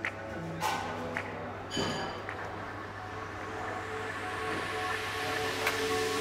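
Soft background music with long held notes, swelling slightly toward the end, with a few light clicks of cutlery.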